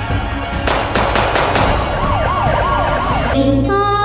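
Crime-news intro jingle: music with a siren sound effect wailing quickly up and down, and a rapid run of five or six sharp hits about a second in. Near the end it cuts to different music with held tones.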